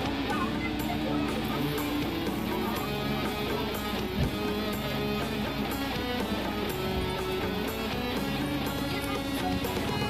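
Background music with guitar and a steady beat, with one short knock about four seconds in.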